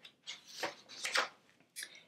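Pages of a hardcover picture book being turned by hand: a few short paper rustles and swishes in the first second or so, with one more brief rustle near the end.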